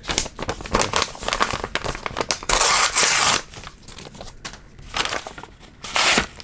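A brown kraft paper envelope being handled and torn open: a run of crinkling and rustling paper, with one longer, louder tear about two and a half seconds in.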